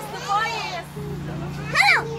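A group of children talking and calling out. Near the end one child gives a brief high-pitched shout whose pitch rises and falls.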